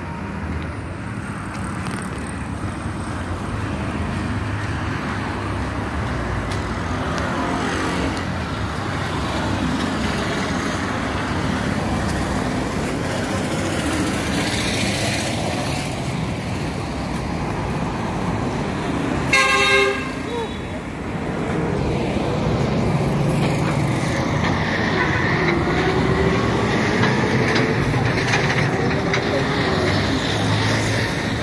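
Road traffic noise from passing cars and minibuses, with a single short vehicle horn toot about two-thirds of the way through, the loudest sound. Near the end a vehicle engine passes close by and the traffic grows louder.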